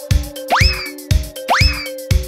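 Background music with a steady beat, a deep kick drum about twice a second, over held tones. A quick rising swoop that then falls away sounds twice, about half a second in and again a second later.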